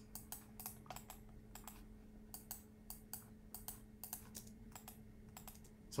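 Faint, irregular clicking of computer keyboard keys, a few clicks a second, over a faint steady low hum.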